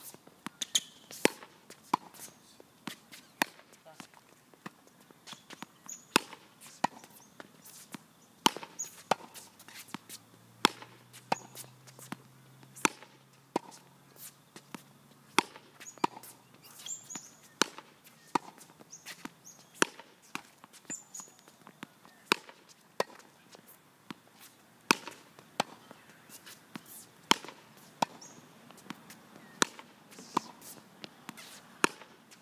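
Tennis balls being struck and bouncing on a court in an ongoing exchange: a string of sharp, separate pops, about one or two a second and unevenly spaced.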